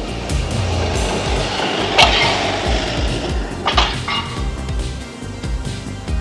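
Background music with a steady beat. A sharp, loud clattering hit comes about two seconds in, and two shorter knocks follow near four seconds.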